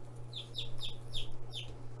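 Day-old Rhode Island Red/ISA Brown chick peeping: a quick run of short, high peeps, each sliding downward in pitch, about four a second.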